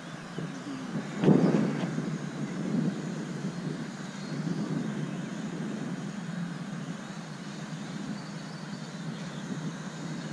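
Steady low outdoor rumble with no clear pitched engine or motor note, broken just over a second in by a loud, sudden burst that dies away within half a second.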